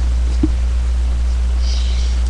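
Steady low electrical hum with a faint hiss underneath, and one brief short tone about half a second in.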